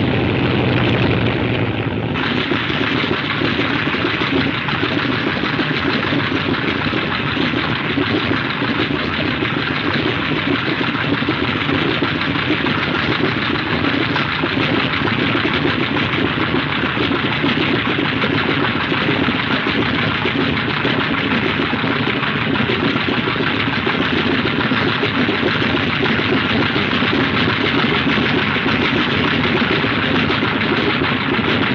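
Aircraft radial propeller engines running steadily and loudly on the ground; about two seconds in the sound turns into a broader, hissier roar that holds unchanged.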